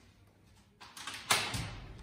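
A wooden door being unlatched and pushed open: a soft rattle, then one sharp latch click a little over a second in, fading as the door swings.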